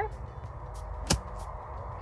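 Practice swing of a golf iron: one short, sharp swish as the clubhead brushes through the grass about a second in.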